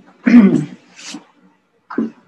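A woman clearing her throat once, a short voiced 'ahem' followed by a fainter breathy sound.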